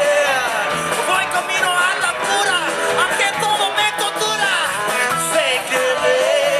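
Live rock band playing: a lead vocalist singing over electric guitars, bass and drums.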